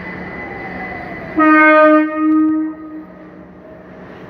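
Class 378 Electrostar electric train running in along the platform with a steady rumble and a falling motor whine as it slows. About a second and a half in, its horn sounds loudly for over a second, dipping briefly in the middle, before the rumble carries on.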